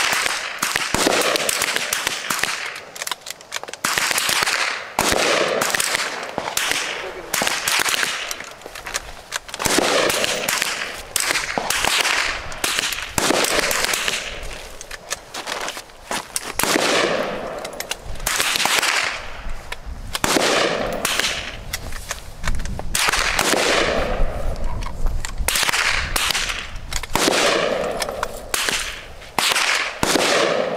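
Rifle shots from several shooters firing along a line at an irregular pace. There are a couple of dozen sharp cracks over the span, each followed by a short echo.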